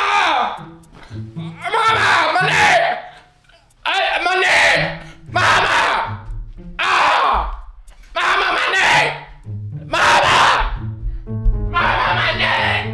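A man yelling out loudly over and over, about one cry every second or so, over background music with a low steady bass line.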